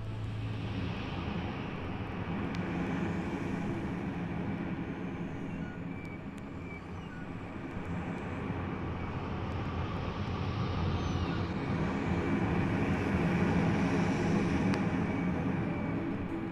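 A steady rushing, rumbling noise like a field recording, swelling louder toward the end, with a few faint short high chirps scattered through it.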